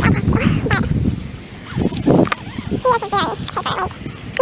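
Low rumbling noise of movement on the microphone, then a high-pitched, bending voice near the end.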